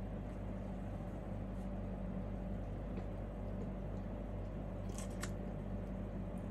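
Steady low background hum with no typing, broken about five seconds in by a brief cluster of three or four sharp clicks.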